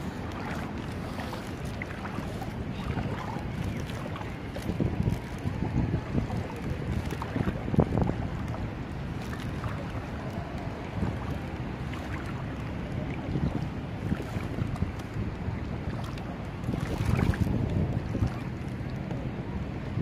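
Wind blowing on a phone's microphone over a steady noisy background, with uneven louder gusts and handling noise at times.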